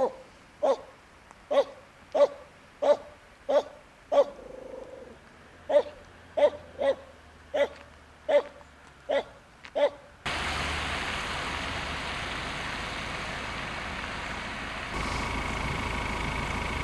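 A dog barking repeatedly, about fourteen single barks spaced well under a second apart with a short gap midway. The barking stops abruptly about ten seconds in, giving way to a steady noise.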